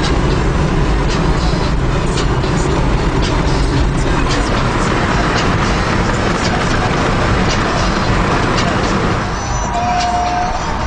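Steady road and wind noise inside a moving car, with music playing underneath; a held musical note comes in near the end.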